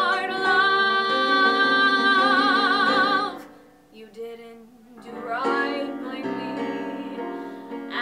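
A woman singing solo in a trained, musical-theatre style with instrumental accompaniment: a long held note with wide vibrato ends about three seconds in, and after a short, quieter lull she sings again.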